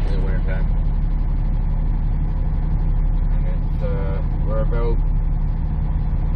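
Semi truck's diesel engine idling while stopped in traffic, a steady low drone heard from inside the cab.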